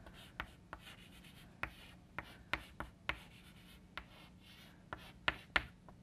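Chalk writing on a blackboard: a string of short, irregular taps and scrapes as letters are written.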